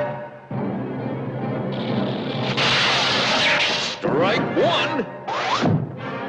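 Cartoon soundtrack: dramatic orchestral music under sound effects. A loud noisy crash-like burst comes about halfway through, then a few quick sliding, swooping tones near the end.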